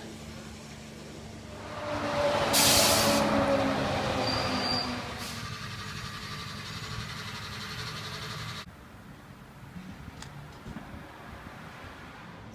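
Fuel pump dispensing heating oil into a drum: the pump motor hums steadily while oil rushes through the nozzle, with a short sharp hiss about two and a half seconds in. The rushing stops suddenly about two-thirds of the way through, leaving a lower hum.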